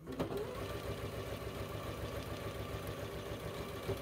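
Electric sewing machine starting suddenly and running steadily at a fast, even stitching pace as a seam is sewn across pieced quilt-block fabric.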